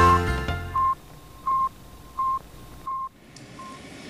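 Intro music ends just under a second in and is followed by a row of short electronic beeps on one pitch, about 0.7 s apart, each fainter than the last until they fade out.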